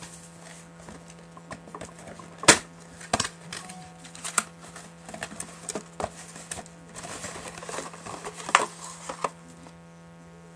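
A cardboard trading-card box being handled, opened and its paper card packs tipped out onto a wooden table: a string of sharp clicks, taps and rustles, the loudest about two and a half seconds in, over a steady low hum.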